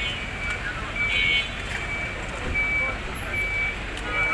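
A vehicle's reversing alarm beeping: short, high single-tone beeps, evenly spaced about one every three-quarters of a second, over faint crowd murmur.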